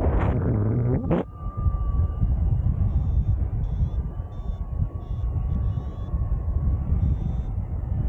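Wind rushing over the action-camera microphone while paragliding, a steady low buffeting, with a brief sound sliding down in pitch in the first second.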